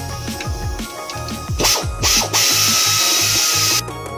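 Air ratchet working on the transmission pan bolts of a 46RE automatic: two short bursts a little past a second and a half in, then one steady run of about a second and a half that cuts off suddenly near the end. Electronic music with a steady beat plays throughout.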